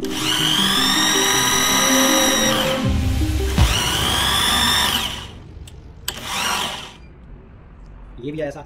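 Corded electric drill spinning a Mercedes truck alternator by its pulley nut to bench-test its output: a high motor whine that rises as the trigger is squeezed and runs steady for about two and a half seconds. It drops off, spins up again for about two seconds, and gives a short final burst about six seconds in.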